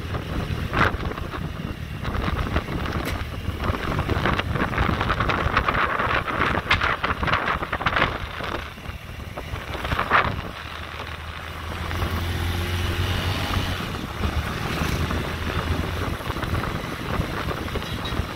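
Wind buffeting the microphone on a moving motorbike, over the low steady hum of its engine, with gusts rising and falling and the engine hum coming up stronger about two-thirds of the way through.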